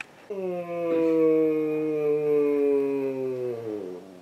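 A man's voice holding one long, low howl-like note for about three and a half seconds, steady and then sliding down in pitch as it ends.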